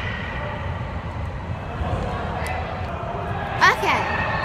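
Steady low rumble of the background noise in a large indoor sports hall, with a brief voice near the end.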